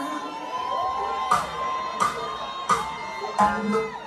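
Live concert sound: a crowd cheering and singing along over the band's music, with sharp beats about every three quarters of a second.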